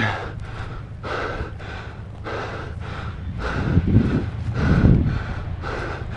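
A man's rapid, heavy breathing close to the microphone, with breaths coming about every half second, from exertion while moving under fire. Two louder low rumbles come about four and five seconds in.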